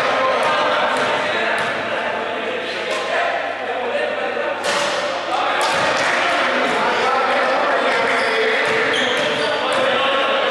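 A basketball bouncing on a hardwood gym court, a few scattered bounces, with players' voices carrying in the large indoor hall.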